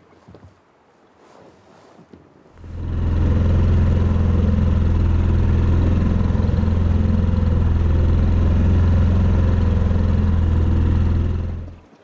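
Inflatable dinghy's outboard motor running steadily under way, heard close from on board. It comes in about two and a half seconds in and cuts off suddenly just before the end.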